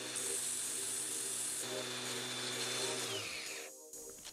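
Cordless angle grinder with a flap disc and a cordless drill running as a screwdriver bit is ground down to a sharp point, giving a steady motor hum with a high grinding hiss. Both motors wind down and stop about three seconds in.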